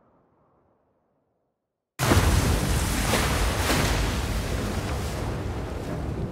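A film sound effect: after a short silence, about two seconds in, a sudden loud crash breaks into a sustained rushing rumble that slowly fades, as a car plunges off a cliff into the river below.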